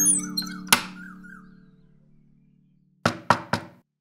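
Background music dies away, then three quick knocks on a wooden door about three seconds in.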